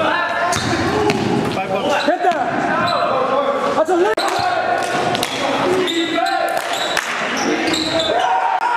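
Basketball bouncing on a hardwood gym floor during play, with players' voices, all echoing in a large gymnasium.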